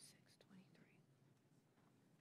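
Near silence: hearing-room tone with a brief faint whisper about half a second in.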